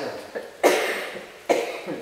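A person coughing twice, a little under a second apart, each cough sudden and then fading.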